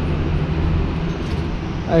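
Steady low rumble of nearby street traffic, with no distinct events.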